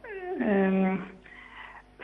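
A caller's voice over a telephone line: one drawn-out vowel that falls in pitch, is held for about half a second, and then trails off.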